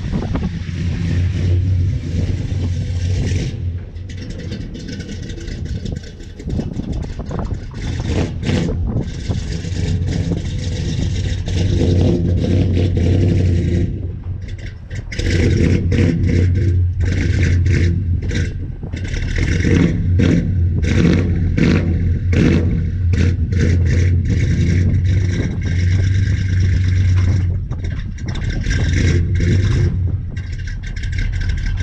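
Old Ford pickup truck's engine running and revving as the truck reverses up to a boat trailer, easing off briefly a few seconds in and again about halfway through.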